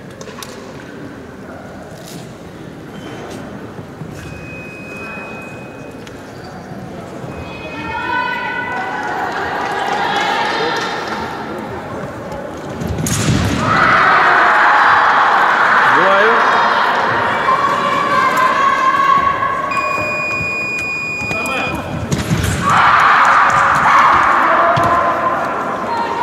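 Voices and shouting in a large hall, getting much louder about halfway through.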